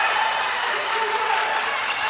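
A few spectators in a gym clapping and shouting over a youth basketball play.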